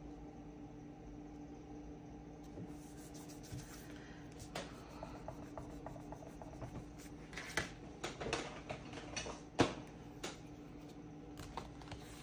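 Fingers rubbing a paper sticker down onto a planner page and handling the sticker sheet: a run of soft rubs, rustles and small taps that starts a few seconds in, the sharpest tap coming past the middle, over a steady low hum.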